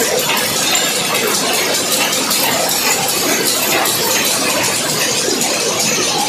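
Several rapier power looms with Jacquard harnesses running together, a loud, steady, dense mechanical clatter.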